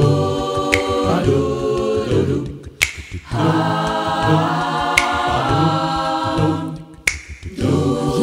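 Male vocal group singing a cappella, wordless held harmony chords over a low bass line, breaking off briefly twice. Sharp finger snaps mark the beat about every two seconds.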